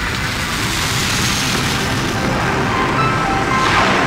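Loud jet-engine noise that starts suddenly and runs on steadily with a low rumble, over background music.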